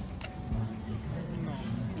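Faint background voices over a steady low rumble of outdoor noise, with one short knock about half a second in.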